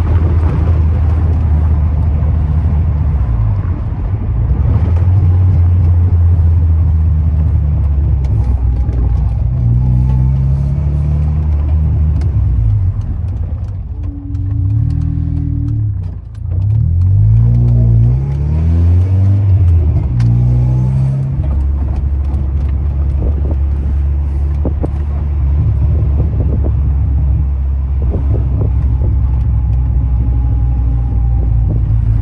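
Ford Escort Mk6 engine and road noise heard from inside the cabin while driving. The engine runs steadily at first, its revs rise and fall several times through the middle with a short drop in loudness, then it settles back to a steady pull.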